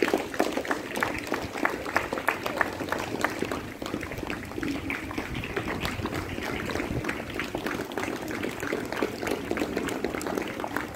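Audience applause: many hands clapping at once in a dense crackle, easing slightly after about four seconds.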